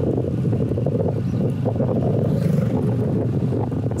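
Wind buffeting the microphone of a camera on a moving road bicycle: a steady, loud low rumble.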